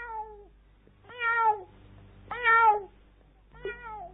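A domestic cat meowing about four times, each meow falling in pitch, with two longer meows in the middle and a short one near the end.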